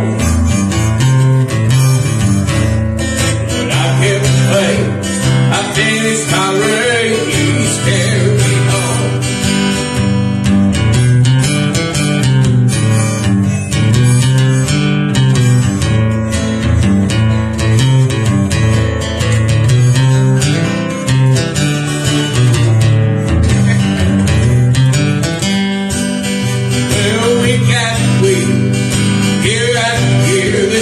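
Acoustic guitar strummed in a steady country-style song accompaniment, with a singing voice coming in near the end.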